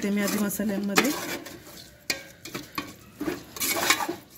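A slotted steel spoon stirs thick masala and yogurt in an aluminium pressure cooker, scraping and knocking against the pot's sides. There are separate scrapes about a second in, about two seconds in, and a quick run of them near the end.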